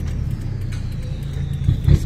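A 1.9-litre diesel pickup engine with an aftermarket turbo, running at low revs and heard from inside the cabin as a steady low drone. A faint high whistle slowly falls in pitch over it, and the engine swells briefly near the end.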